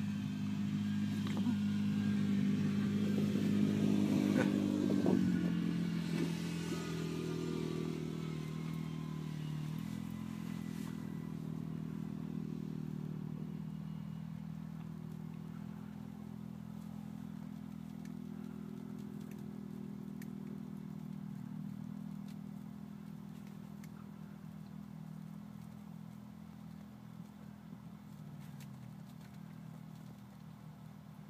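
An engine running, loudest about five seconds in, then dropping in pitch and slowly fading away.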